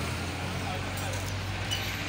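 Busy street traffic noise: a vehicle engine running with a steady low hum that drops away near the end, over a haze of distant voices and street bustle.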